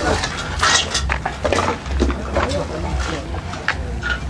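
Indistinct voices of people talking, over a low, uneven rumble on the microphone and a few short clicks.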